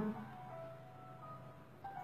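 Soft background music in a pause between spoken sentences: a few quiet, held notes.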